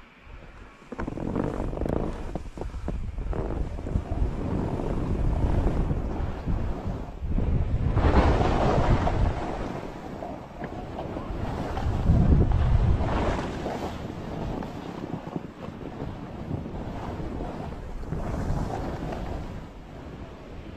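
Skis sliding and scraping over soft, chopped-up snow during a descent, with wind noise on the microphone. The rushing starts about a second in and swells louder twice in the middle.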